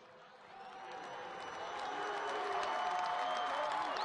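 Stadium crowd cheering and applauding, swelling over the first two seconds and then holding steady, with faint held shouts running through it.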